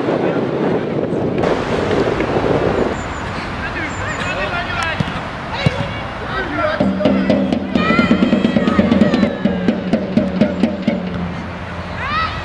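Footballers' voices shouting and calling on the pitch during play around the goal, with a steady low hum and beat-like clicks joining in from about seven seconds in.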